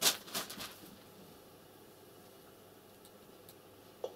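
A few quick computer-mouse clicks in the first second, then quiet room tone with a couple of faint ticks near the end.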